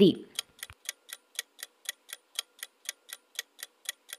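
Clock-like ticking sound effect, even and quick at about four ticks a second, serving as a countdown timer for answering a quiz question.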